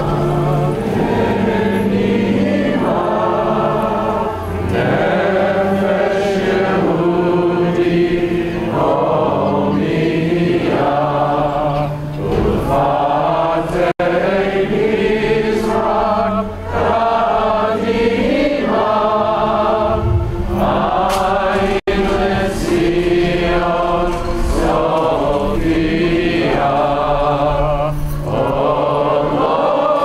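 Voices singing a slow song in held, wavering notes over a steady low accompaniment.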